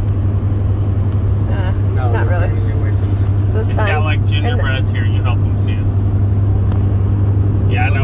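Steady road and engine noise inside a car cabin at highway speed, with a strong low drone. A voice speaks briefly a couple of times over it.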